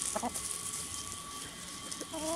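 Backyard hens making a short soft cluck just after the start, then only faint, low-level flock sounds with a thin steady tone beneath.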